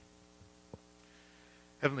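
Low steady electrical hum, with one faint tick about three quarters of a second in; a man's voice begins speaking near the end.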